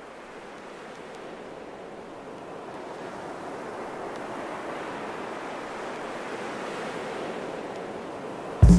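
A steady rushing noise, like surf, swelling slowly in level: the noise intro of a recorded DJ mix.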